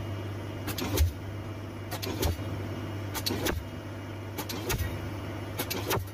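Pile hammer driving a concrete sheet pile, with five sharp blows in six seconds, about one a second, each a quick double crack. A steady low machinery hum runs underneath.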